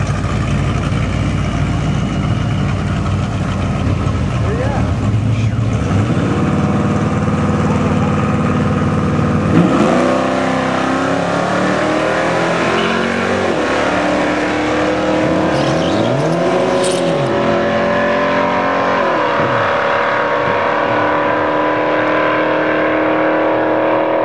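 Plymouth Duster drag car's engine rumbling and revving at the starting line, then launching about ten seconds in and accelerating hard down the strip, its pitch climbing and dropping repeatedly with the gear changes.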